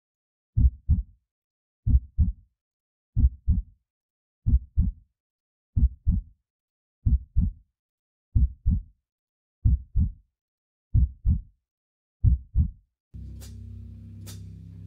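Heartbeat sound effect: a slow, steady run of low double thumps, about one pair every 1.3 seconds, ten in all. Shortly before the end a steady low hum comes in.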